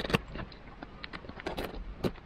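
Snap-off utility knife cutting the tape along the edge of a small cardboard box: a sharp click just after the start, then scattered small clicks and scratches, with a short scraping rustle about a second and a half in.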